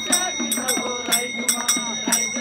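Small brass hand cymbals struck in a steady beat, about three strokes a second, each leaving a bright metallic ring, under group singing of a Holi dance song.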